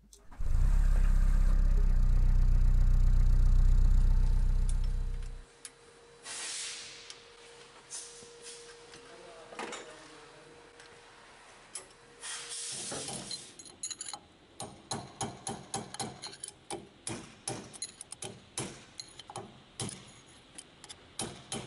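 An engine runs with a loud, steady low rumble for about five seconds, then dies away. After it come scattered metallic clicks and clinks, turning into a quick run of sharp clicks in the second half.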